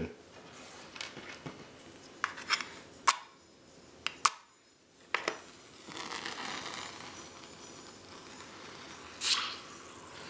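UCO Stormproof match struck against the box's striker: a few sharp scrapes, then it catches about five seconds in and burns with a steady hiss. Near the end a short burst of hissing as the burning match head is plunged into a glass of water.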